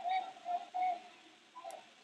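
Three short, distant shouted calls in the first second, with a fainter one near the end, over the low background of a large sports hall.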